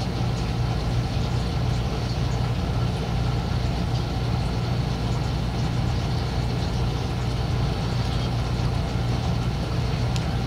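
A steady low mechanical hum, even and unchanging.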